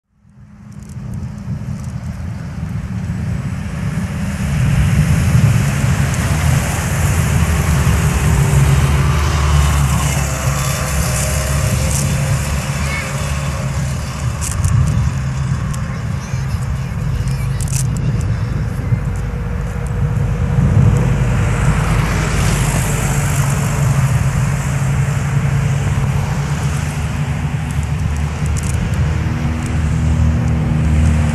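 Outdoor street ambience: a steady low rumble of road traffic with faint voices, fading in over the first couple of seconds.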